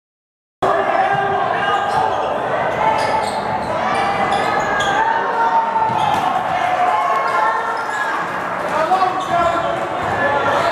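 Silent for about the first half second, then a basketball bouncing repeatedly on a hardwood gym floor. Voices from the crowd and players echo in the large gym.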